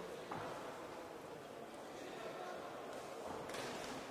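Steady hall ambience of a boxing bout in a sports hall, with faint distant voices.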